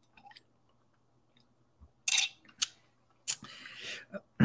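A person sipping through a metal straw from a metal mug: faint mouth clicks, then short noisy slurps about two seconds in. A sharper click comes near the end as the mug is lowered.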